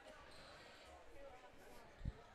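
Faint gymnasium ambience: distant voices of the crowd and players echoing in a large hall, with a few soft thuds.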